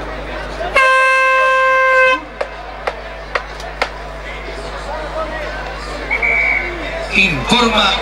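A loud air horn sounds once, a single steady tone lasting about a second and a half: the hooter marking the end of the first half. A few sharp knocks follow, and voices rise near the end.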